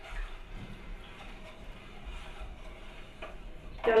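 Faint stirring of agar powder and sugar into cold water in a cooking pot, with a few light ticks of the utensil against the pot.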